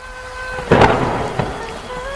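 A sudden thunderclap about three-quarters of a second in, trailing off into a rumbling hiss of rain, with a smaller crack a little later.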